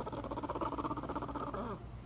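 French bulldog vocalizing: one long pulsing, throaty call that slides down in pitch and stops near the end.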